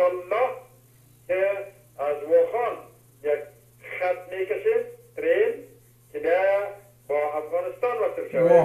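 A man speaking in Persian (Dari) in short phrases with brief pauses, over a steady low electrical hum.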